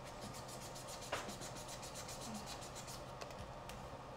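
2000-grit sandpaper rubbed quickly back and forth over a carbon fiber drone-frame arm in fast, even scratching strokes that stop about three seconds in. This is the fine finishing sand that blends in a super-glued delamination repair.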